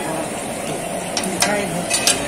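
Jalebis sizzling as they deep-fry in a large karahi of hot oil, a steady frying hiss with a few sharp clicks in the second half.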